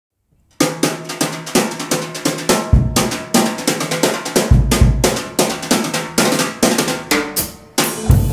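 Jazz drum kit playing solo, starting about half a second in: a run of snare strokes, rimshots and hi-hat, with two heavy bass drum hits in the middle.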